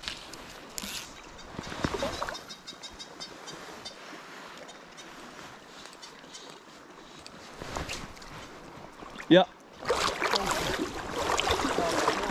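Steady rush of a flowing river, with a brief run of fast, faint ticks about two and a half seconds in. A louder broad rushing noise comes in near the end.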